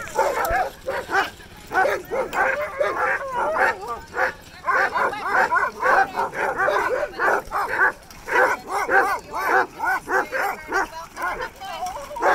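Many sled dogs (huskies) barking and yipping at once in a dense, overlapping chorus of short, quick calls with no pause.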